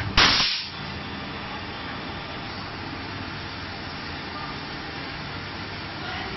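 Injection moulding machine running a preform mould test, with a steady machine hum. A single sharp, loud burst comes just after the start and fades within about half a second.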